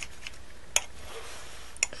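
Two short, sharp clicks about a second apart as a craft blade touches down on a tile while trimming a soft polymer clay shape.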